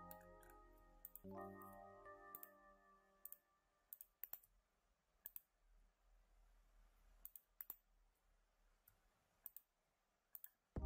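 Faint computer mouse clicks, about a dozen at irregular intervals, as points are placed and dragged. A few soft, sustained background music notes fade away in the first three seconds.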